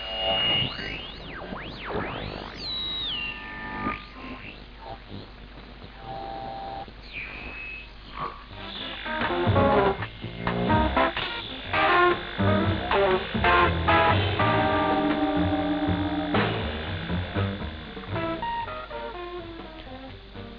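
Medium-wave broadcast reception on a two-transistor audion (regenerative) receiver: sweeping whistles and steady whistle tones as it is tuned, the heterodyne whistling typical of such a receiver, then a station's music coming in from about nine seconds in.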